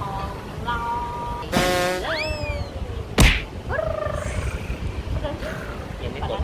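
Cartoon-style comedy sound effects: a steep rising whistle glide about two seconds in, a sharp whack about three seconds in that is the loudest sound, then a shorter rising tone.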